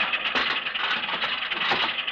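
Radio-drama sound effect of scattered mechanical clicks, knocks and rattles, over the steady hiss of an old 1954 broadcast recording.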